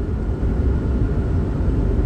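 Steady low rumble of background noise, with no clear events.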